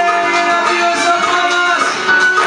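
Live salsa band music with guitar. A single long held note sounds over the band and stops shortly before the end.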